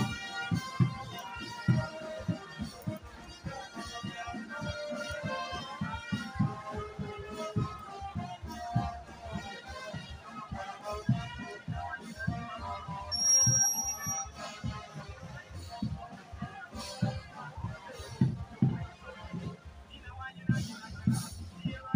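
A marching band playing on the move: a steady drumbeat under wind instruments carrying a tune. About thirteen seconds in a short, high, steady tone sounds briefly over the band.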